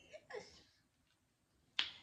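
A brief faint murmur of a woman's voice, then silence, then a single sharp snap near the end.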